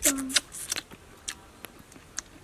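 Close-up eating sounds: a short hummed voice at the very start, then a run of sharp clicks and smacks from biting and chewing food, densest in the first second and thinning out after.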